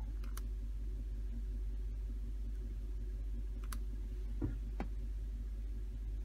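A few isolated clicks from operating a laptop running diagnostic software, over a low steady hum.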